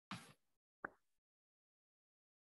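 Near silence, broken by two faint brief clicks: a short pop just after the start and a sharper click a little under a second in.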